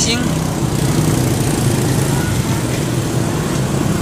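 Several small motorbike and scooter engines idling and pulling away in street traffic, a steady low hum.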